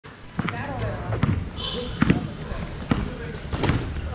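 Basketball bouncing on a concrete court: several sharp, irregularly spaced bounces, with players' voices calling out between them.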